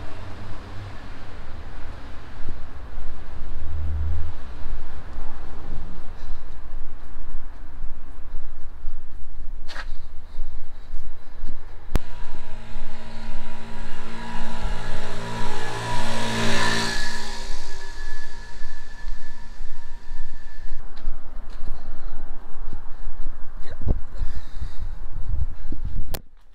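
A motorbike engine approaching and passing close by, loudest a little past halfway, then fading away. A low rumble runs underneath throughout.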